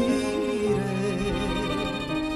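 A woman singing a hymn into a microphone, holding long notes over a steady instrumental accompaniment.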